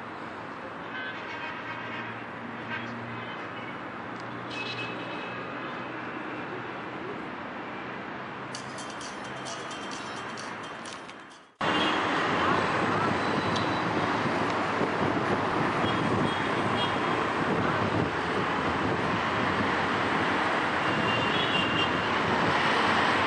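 Outdoor street ambience with road traffic noise and faint scattered tones. About halfway through it cuts abruptly to a much louder, steady rushing noise.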